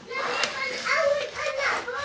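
A young child talking in several short, high-pitched phrases.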